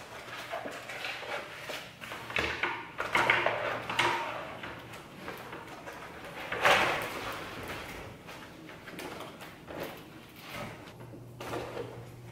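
Irregular handling noises: rustling, clicks and knocks of plastic as a seedling heat mat is unpacked and laid on a countertop under plastic seed trays, with a sharper knock a little past halfway.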